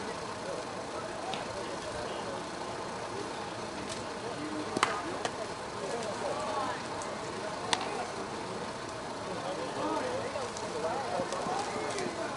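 Indistinct chatter of players and onlookers at a softball field, with two sharp knocks, one about five seconds in and one nearly three seconds later, from the softball striking a bat or glove.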